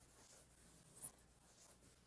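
Near silence with faint writing sounds, as the lecturer writes out an equation, and a small tick about a second in.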